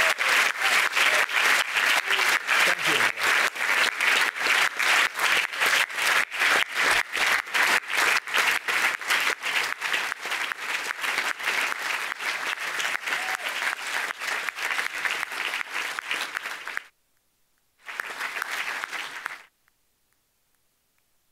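Audience applause: many people clapping together, easing off a little after the middle, then cut off abruptly about three seconds before the end, coming back briefly and cutting off again just before the end.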